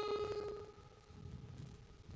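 The tail of a held sung note, fading out within the first second, then near silence with faint room tone.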